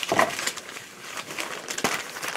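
Handling noise from small objects being moved about: light rustling with a sharp click near the start and a few quick clicks shortly before the end.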